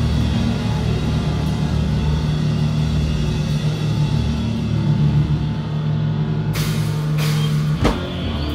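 A live rock band playing loud, with guitar over a driving drum kit and a heavy low end; cymbals ring out brightly near the end.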